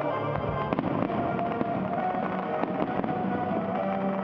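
Fireworks going off over background music, with a quick cluster of sharp bangs and crackles in the first couple of seconds and a few scattered bangs later.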